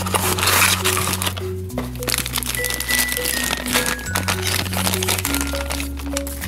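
Background music with a bass line and a simple melody, over the crinkling and crackling of clear plastic packaging and cardboard being handled as a toy plane is unwrapped.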